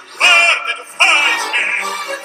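Male operatic bass-baritone voice singing with vibrato over orchestral accompaniment, with two loud sung notes beginning about a quarter second and about a second in.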